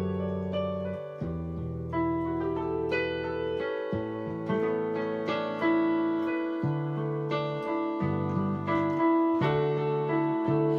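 Electronic keyboard played with a piano sound: slow gospel chords, low held chords changing every second or two under a melody of single notes.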